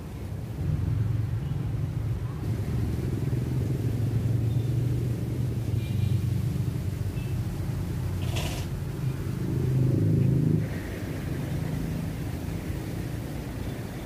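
Low rumble of a motor vehicle running close by. It swells slightly and then drops away about eleven seconds in, with one brief sharp noise shortly before.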